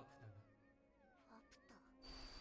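Near silence, with faint high-pitched cries that glide up and down in pitch.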